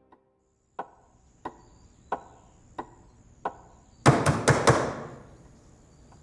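Five sharp knocks, evenly spaced at about one and a half a second, then about four seconds in a louder burst of four quick bangs with a short ringing tail.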